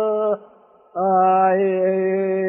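A man singing a slow Greek folk song, unaccompanied, in long held notes. He breaks off for a short breath about a third of a second in and takes up a new long note about a second in.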